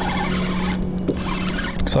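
A steady mechanical hum on one low pitch, holding unchanged, over a light haze of wind and water noise.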